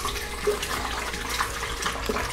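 Pineapple juice poured from a carton into a blender jar: a steady stream of liquid splashing into the jar.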